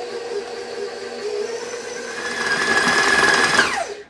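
Electric stand mixer running, its beater working stiff cookie dough as the last of the flour is combined; it grows louder and higher-pitched about halfway through. Near the end the motor is switched off and winds down with a falling whine.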